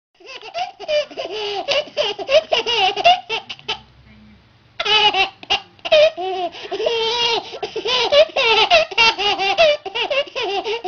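Baby laughing hard in rapid, high-pitched bursts, with a pause of about a second roughly four seconds in.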